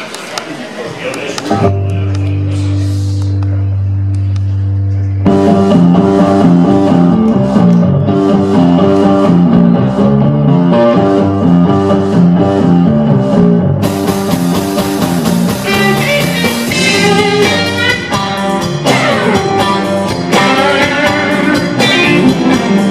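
Live electric blues band: a held chord rings out about two seconds in, then drums, bass and electric guitars come in together about five seconds in with a steady blues groove. Cymbals grow brighter partway through, and a lead guitar plays a line of sliding, bent notes near the end.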